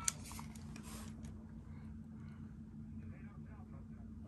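A single click from a hotel room telephone just after a keypad tone, then a quiet wait on the line with low hiss and faint muffled sounds.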